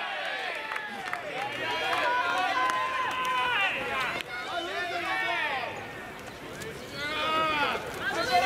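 Several voices shouting and calling out across a baseball ground, long drawn-out calls overlapping one another, easing off about six seconds in and rising again near the end.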